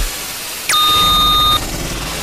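Electronic noise-music passage: a low noise bed, and about two-thirds of a second in a synthetic beep that drops sharply in pitch, holds steady for about a second, then cuts off.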